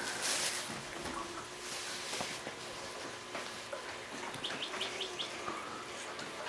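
Faint birdsong chirps and tweets played by a baby swing's nature-sound unit, with a quick run of about five short chirps around four and a half seconds in.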